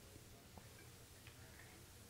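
Near silence: faint tape hiss with a few faint ticks.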